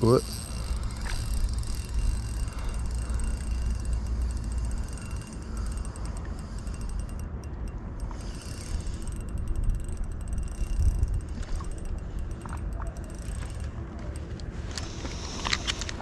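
Daiwa Certate 2500S LT spinning reel being cranked while a hooked fish is played on a light rod: a steady mechanical whirring with fine ticking from the reel, over a low steady rumble.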